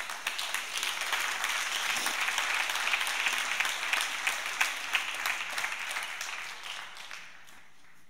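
Congregation applauding, building quickly, holding for several seconds and dying away near the end.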